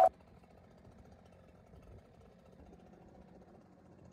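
Background music cuts off right at the start, leaving only a very faint, steady low rumble of outdoor background noise.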